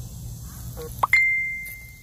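A single bright, bell-like ding about a second in, struck suddenly after a short rising chirp, ringing on one clear tone and fading away over about a second.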